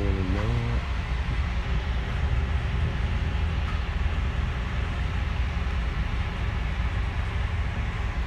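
Steady low rumble and road noise of a moving road vehicle, heard from inside it.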